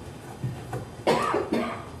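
A person coughing: one short, loud cough about a second in.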